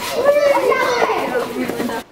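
A group of children's voices, shouting and chattering over one another with no clear words.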